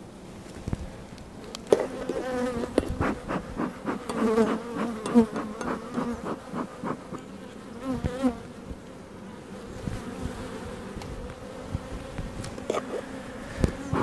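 Honey bees buzzing loudly around an open hive, single bees flying close past with their buzz swooping up and down in pitch, among a few light clicks and knocks. The colony is disturbed and defensive: really not happy.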